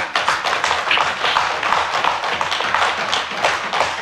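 Members of a parliamentary chamber applauding in approval with a dense, even patter of desk-thumping and taps, many hands at once, lasting the whole pause.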